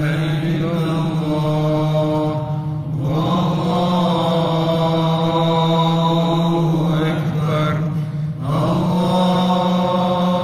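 A man chanting an Islamic religious chant through a microphone, in long held, slowly bending phrases with short breaks about three seconds in and near the end. A steady low drone carries on beneath the voice.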